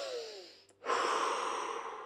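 A woman taking an audible deep breath: a short breath in, a brief pause, then a long breath out through the mouth.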